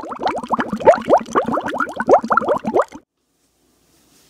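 Cartoon bubbling sound effect: a rapid run of short rising plops, like bubbles popping. It stops suddenly about three seconds in.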